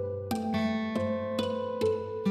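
Sampled guitar in a Kontakt virtual instrument playing back a programmed melody: four plucked notes ring over held low chord notes. Its play styles are switched by keyswitches.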